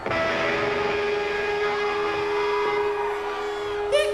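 Distorted electric guitars through stage amplifiers, sounding a steady, held chord that starts abruptly and drones on, with sliding pitches near the end.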